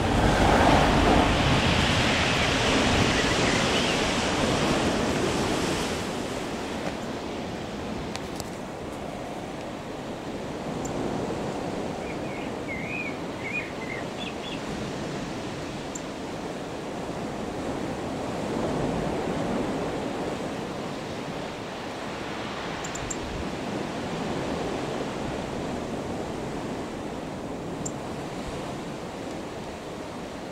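Steady outdoor rush of wind and distant sea surf, louder for the first six seconds. A few short bird chirps come about halfway through.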